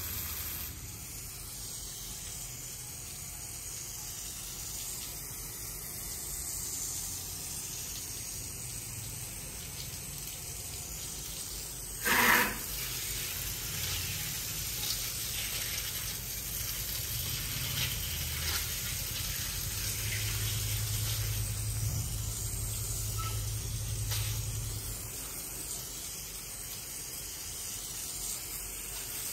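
Jet of water from a handheld high-pressure nozzle on a garden hose, spraying steadily and splashing on concrete and a wall. A brief loud burst of noise about twelve seconds in.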